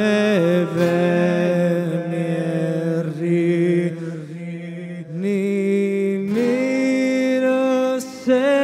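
A man singing a traditional song in long, drawn-out held notes, his voice wavering and sliding between pitches, to his own acoustic guitar accompaniment. The voice drops quieter about four seconds in, then swells into a new held note.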